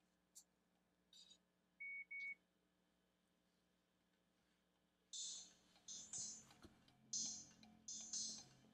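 Two short electronic beeps from the sleep mask's built-in Bluetooth headphones, then, from about five seconds in, faint tinny music leaking from the mask's small headphone speakers as playback starts.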